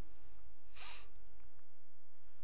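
Meeting-room background hum with faint steady tones, broken by one brief soft hiss just under a second in.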